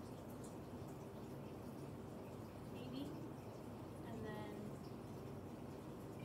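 Quiet room tone with a woman's voice murmuring softly twice, about three and four seconds in.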